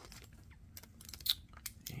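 Faint, scattered clicks and light rustles of trading cards being handled, with one slightly sharper tick about two-thirds of the way through.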